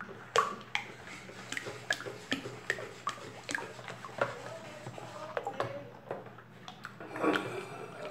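Long plastic spoon stirring thickened homemade liquid detergent in a plastic basin: liquid sloshing, with irregular knocks of the spoon against the basin.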